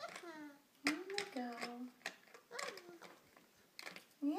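A toddler babbling: short, high wordless voice sounds that glide up and down. A few sharp clicks come from small toy cars being handled.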